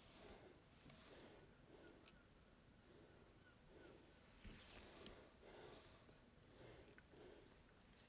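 Near silence: room tone with faint soft handling rustles as crochet thread is drawn around a bead with a needle.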